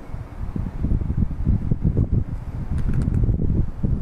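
A low, uneven rumble of background noise with no speech.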